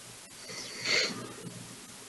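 A man breathing in audibly close to the microphone, a short hissy intake that swells to its loudest about a second in.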